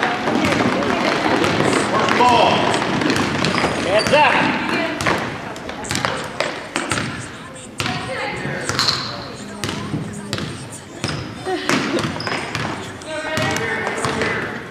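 A basketball being dribbled on a hardwood gym floor, a run of irregular bounces, under the shouts and chatter of spectators and players in a large gym.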